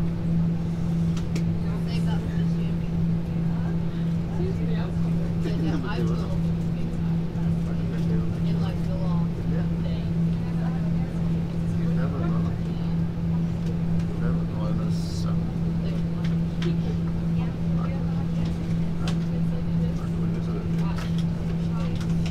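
Steady drone inside a parked Airbus A340-300's cabin: one low, even hum that doesn't change, with faint passenger talk in the background.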